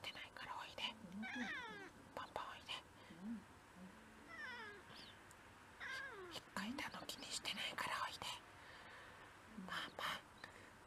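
A tabby cat meowing several times, short calls that fall in pitch, with soft clicks and rustling in between.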